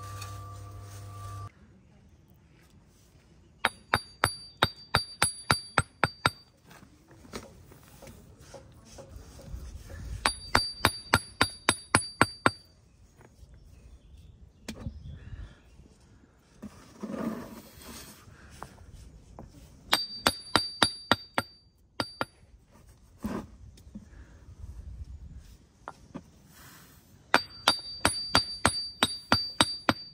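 Brick trowel handle tapping porphyry setts down into their mortar bed, in four quick runs of about ten taps, the steel blade ringing with each tap as the setts are bedded to the string line.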